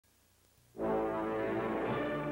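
Orchestral theme music that comes in suddenly about three-quarters of a second in with a loud, held brass chord.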